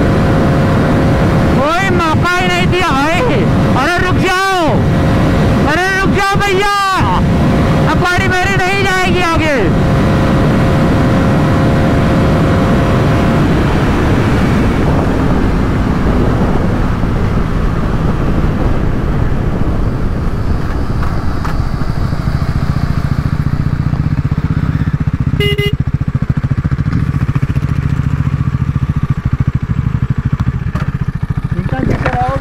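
Bajaj Pulsar NS400Z's 373cc single-cylinder engine heard from the saddle as the bike slows down from its top speed. The revs rise and fall in about four swells over the first ten seconds, with wind rush over the bike. The engine and wind then die away to a low steady running sound as the bike rolls to a stop, with a short beep near the end.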